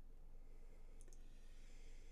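Near silence: quiet room tone with a low hum, broken by two faint sharp clicks in quick succession about a second in.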